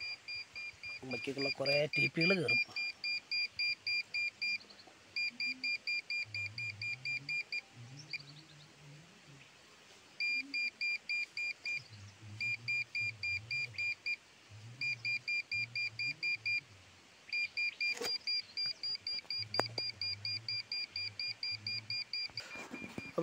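A handheld SOLID SF-810 PRO satellite finder meter beeping rapidly at one steady high pitch, about six or seven beeps a second, in runs broken by short pauses. Its tone shows that it is picking up signal from the satellite as the dish and LNB are tested.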